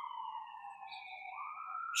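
A faint siren-like wail: one tone whose pitch slides slowly down for over a second, then rises again near the end.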